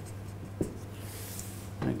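Felt-tip marker writing on a flip-chart pad: a faint, high scratching of the tip on the paper about a second in, after a single small click, over a low steady hum.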